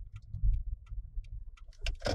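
Low rumble of a car driving slowly, heard from inside the cabin, with scattered small irregular clicks and a louder one near the end.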